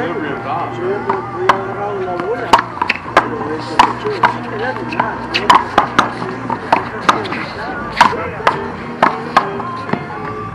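One-wall handball rally: a rapid series of sharp smacks as a rubber handball is struck by hand and rebounds off the concrete wall and court, about twenty in all, coming faster after the first few seconds.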